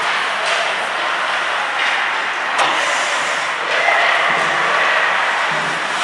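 Ice hockey play in an ice arena: skates scraping and carving on the ice and sticks working the puck, with a single sharp crack about two and a half seconds in.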